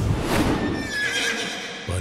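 A horse whinnying: one wavering call lasting under a second, after a brief rushing noise at the start.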